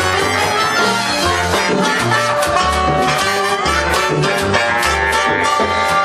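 Live salsa band playing, a brass section of trumpets and trombones sounding over a moving bass line and steady percussion.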